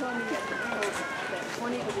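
Overlapping voices of several people chatting, with a laugh near the end.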